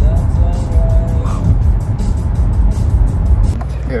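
Low, steady road rumble of a car driving, heard from inside the cabin, with music playing over it; the rumble changes about three and a half seconds in.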